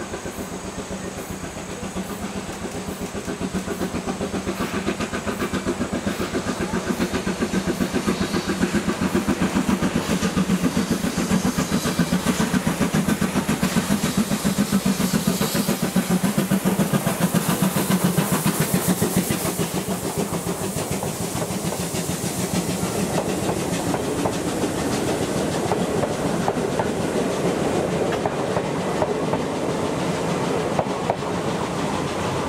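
JNR C11 steam tank locomotive (2-6-4T) working hard up a grade, its rapid, even exhaust beats growing louder as it comes past, with a hiss of steam near the middle. After it passes, the old passenger coaches roll by with the clickety-clack of wheels over rail joints.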